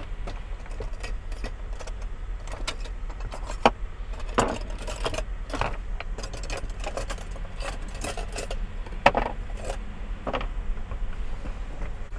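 Kitchen items clinking and clattering as they are rummaged in a drawer and set down on a counter: scattered clicks, knocks and rustles, over a steady low hum.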